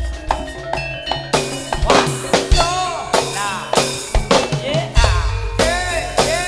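Javanese jaranan ensemble music in the senterewe style: drums and struck percussion keep a fast, even beat, with a high melody line that swoops up and down in pitch from about halfway in. Deep bass beats grow heavier near the end.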